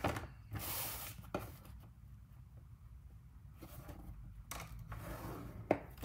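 Cardstock being scored: a few short scraping strokes of a tool drawn along the paper, with soft paper-handling rustles and a small click near the end.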